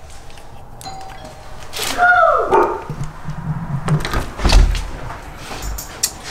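A doorbell is rung: a faint chime about a second in, then a loud falling vocal cry. About four and a half seconds in come a cluster of heavy thuds as the door is opened.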